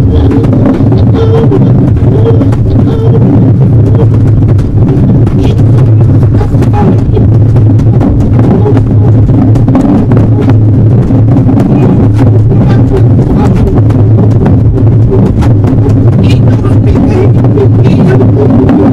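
Loud, distorted lo-fi noise-music improvisation: a dense, steady low drone full of crackling clicks, with wordless vocal sounds mixed in.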